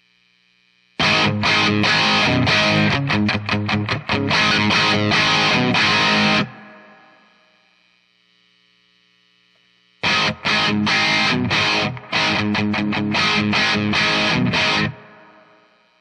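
Les Paul electric guitar on the bridge pickup, played with distortion through a Marshall amp and close-miked with a Sennheiser mic. It plays two rock riff phrases, the first starting about a second in and the second about ten seconds in, and each rings out at its end. A faint amp hum is heard in the gaps.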